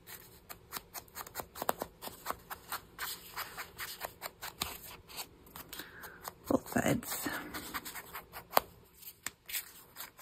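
Ink blending tool's foam pad being dabbed and swiped over the edges of a paper tag: quick light taps and scuffs, about three a second. A short voice-like sound comes in about six and a half seconds in.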